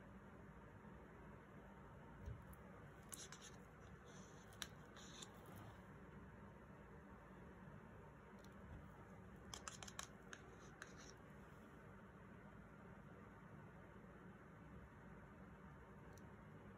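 Near silence: room tone, with a few faint clicks and scratches from handling paint and canvas, once a few seconds in and again about ten seconds in.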